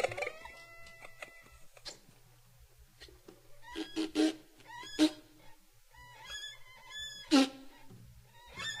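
Sparse free-improvised music from a small ensemble of reeds and strings, made of squeaks, squeals and short, sharply attacked notes. A few held tones come in the first two seconds and a quieter gap follows. The loudest attack comes near the end.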